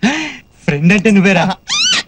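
Spoken film dialogue, a voice talking in short phrases. Near the end comes a brief vocal cry that rises steeply in pitch.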